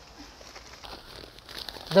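Plastic bag of potting soil crinkling faintly as the soil is tipped out of it into a raised bed, with soft irregular rustling.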